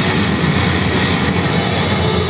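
Cartoon explosion sound effect played over a hall's PA speakers: a steady, dense rumble with music underneath.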